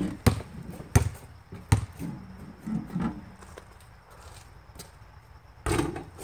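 A basketball being bounced: four sharp bounces in the first two seconds, then a lull.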